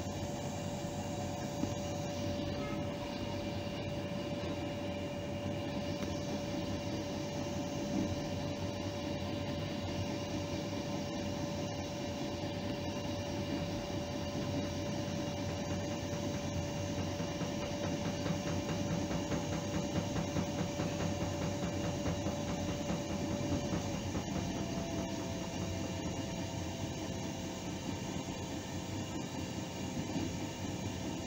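Train running along the track, heard from inside the front of the train: a steady rumble with a steady whine that shifts pitch and splits into two tones about 24 seconds in, and faint clicking from the rails.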